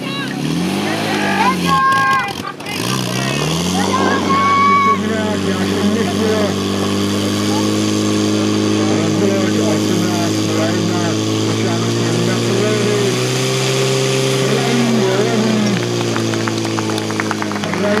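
Portable fire pump engine revving up, dropping briefly, then climbing to a steady high-revving run as it pushes water through the attack hoses to the nozzles, with people shouting over it.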